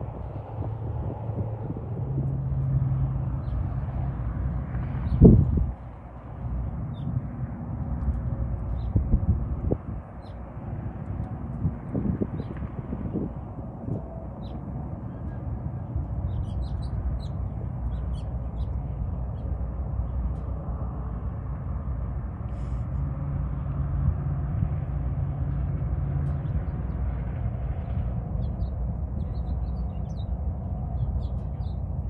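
Outdoor ambience with a steady low rumble. Birds chirp faintly, mostly in the second half, and there is one loud thump about five seconds in.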